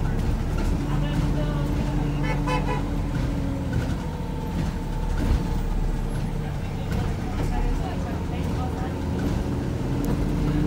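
Interior of a Volvo B5LH hybrid double-decker bus on the move: steady drivetrain rumble with a low hum that holds for a couple of seconds, fades about three and a half seconds in and returns near the end, over rattles from the body and fittings.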